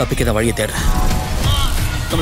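Movie trailer soundtrack mix: music and a voice, with mechanical clicking and ratcheting sound effects.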